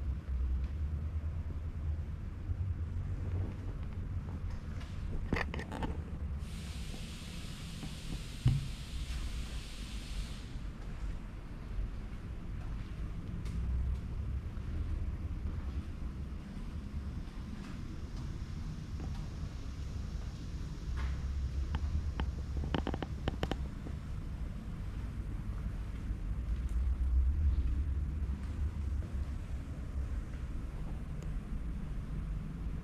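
Steady low rumble of a paint spray booth's ventilation. There is a four-second burst of hiss starting about six and a half seconds in, a single thump a couple of seconds later, and a few scattered clicks.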